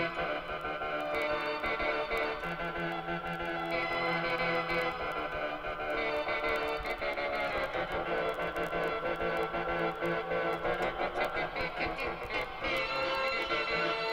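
A Casio CTK-3000 electronic keyboard being played by hand: held lower notes under a busy line of quicker notes that changes pitch often.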